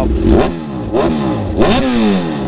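Kawasaki Ninja 1000's inline-four revved while standing through an Austin Racing aftermarket exhaust: three quick throttle blips, the pitch jumping up and falling back each time.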